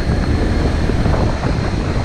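Riding noise of a Honda ADV 150 scooter moving at low speed: a steady low rumble from its single-cylinder engine, mixed with wind on the microphone.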